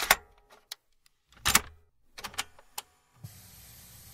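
A handful of sharp clicks and knocks, the loudest about one and a half seconds in, followed by a steady faint hiss of room noise that starts about three seconds in.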